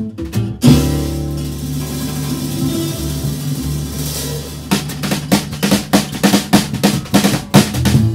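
Live jazz quartet of two acoustic guitars, double bass and drums. About a second in, a loud accent opens a held chord with a drum roll underneath; about five seconds in, the band drops back into a steady strummed rhythm.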